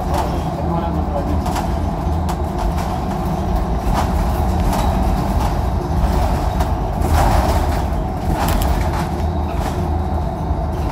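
Interior of a 2016 Nova Bus LFS city bus running: a steady low drivetrain and road rumble, with interior panels and fittings clicking and rattling, most busily about seven seconds in.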